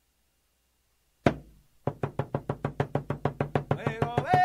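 A hand drum starts a song: one strike that rings out, then, after a short gap, a fast, even roll of beats on the same low note. A voice begins singing over it just before the end.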